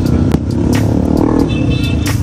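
Road traffic close by: car and motorbike engines running and passing in a steady rumble, with a few short clicks.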